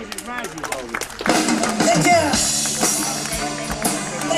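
Live band playing through a PA, with drums and a voice on the microphone over it; the band is thinner for the first second, with sharp drum strikes, and comes back fuller from about a second in.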